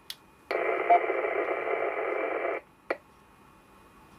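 Radio static: a steady hiss of about two seconds from the speaker of a JetStream JT270M dual-band mobile radio, starting about half a second in and cutting off abruptly, heard while the radio is being tested. A click comes before it and another comes shortly after.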